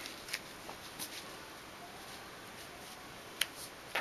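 Faint handling of paper and cardstock: soft rustles and a few light clicks, with one sharper tap about three and a half seconds in.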